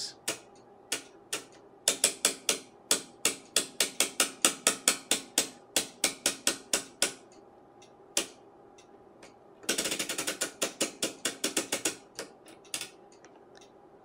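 The TIME/DIV rotary switch of a Tektronix 475 oscilloscope clicking through its detents as it is turned one step at a time. There is a steady run of clicks at about four a second, then a quicker run of clicks near the middle, with a few single clicks between.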